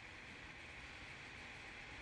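Faint, steady hiss of a microphone's noise floor: room tone only.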